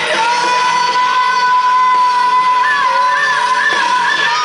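A live pop-rock band playing loudly with singing, in a large hall. A long high note is held steady for about two and a half seconds, then wavers.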